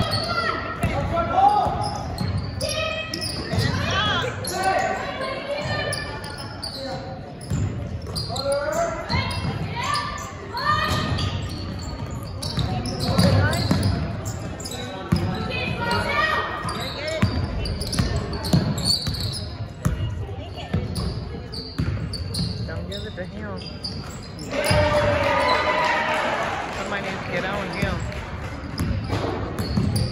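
A basketball being dribbled on a hardwood gym floor, with voices calling out over the play, all echoing in a large gym. About 25 seconds in, several voices shout together more loudly.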